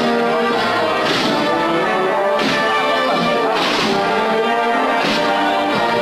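A Spanish processional wind band (banda de música) playing a Holy Week march. Brass and woodwinds hold chords, and a sharp percussion strike comes about every second and a quarter, five times in all.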